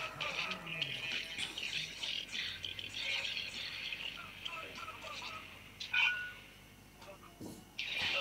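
Film soundtrack music from a Tamil movie playing at moderate level, with a brief sharp sound effect about six seconds in.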